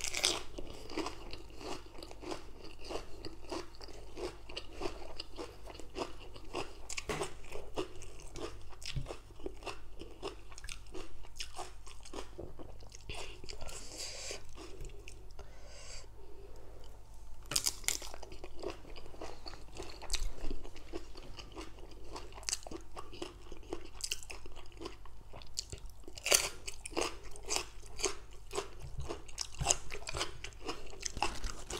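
A person chewing and crunching mouthfuls of spicy green papaya salad with raw leafy greens: a steady run of crisp crunches and chewing noises, with a few louder crunches in the second half.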